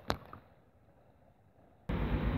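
Handling of a clip-on microphone: one sharp click just after the start, then near silence, then a steady rushing noise that cuts in suddenly near the end.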